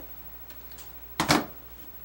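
One short, crisp snip of scissors cutting through strands of lure flash, a little over a second in.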